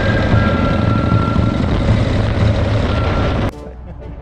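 Motorcycles riding along a road at speed: engine rumble mixed with wind rushing over the camera's microphone. It cuts off suddenly near the end, giving way to a much quieter scene.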